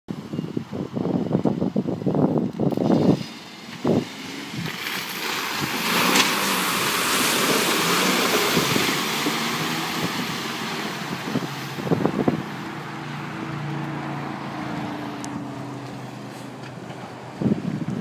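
Four-door Jeep Wrangler driving through a mud pit: a broad splashing, churning wash of tyres through mud and water, loudest a few seconds in, over the engine working under load. Later the engine's steady note comes through more plainly as the Jeep drives out.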